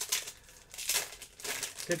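Crinkling and rustling of a trading-card pack wrapper and cards being handled, loudest about a second in. A man's voice comes in right at the end.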